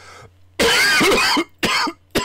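A man coughing: one long cough about half a second in, then a shorter one near the end. He is home sick with what he is pretty sure is a cold.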